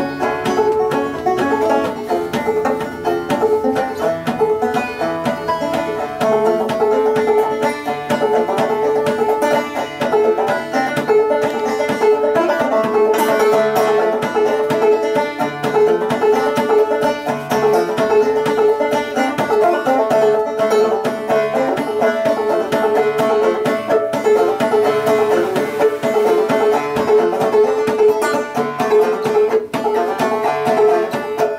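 Solo banjo playing a fast, steady stream of plucked notes, with one note that keeps recurring under the melody.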